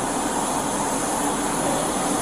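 Steady rushing noise with a faint low hum, picked up by a body-camera microphone.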